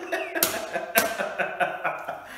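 A man laughing heartily, in a series of breathy bursts about every half second.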